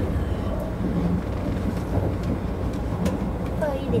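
Kintetsu 50000-series Shimakaze electric train running at speed, heard inside the car: a steady low rumble from wheels and track, with a few faint clicks.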